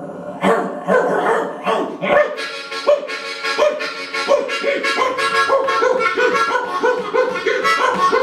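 Blues harmonica played into a microphone, with bending, wailing notes that imitate baying bloodhounds, then a steady rhythmic pattern of about three beats a second from about five seconds in.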